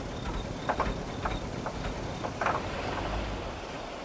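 Sound-effect of a car driving: a steady low engine and road rumble with scattered light knocks and clicks. The rumble dies away near the end.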